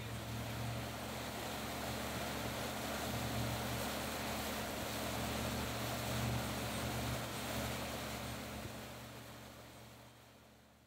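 A covered river cruise boat under way, its engine running steadily as a low hum beneath a wash of noise, fading out over the last couple of seconds.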